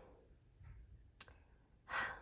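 Quiet room with a single sharp click about a second in, then a person drawing a breath near the end.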